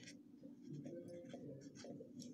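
Pen scratching on notebook paper in a run of short strokes as the digits of a number are written out.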